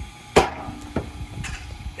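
A Sports Attack pitching machine's spinning wheels launch a baseball with one sharp crack. A softer knock follows about half a second later as the ball strikes the net in front of the garage door.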